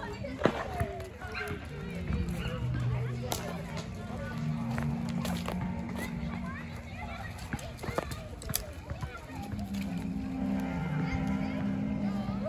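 Indistinct chatter of several people outdoors, with low steady tones underneath that change pitch in steps, and a few sharp clicks.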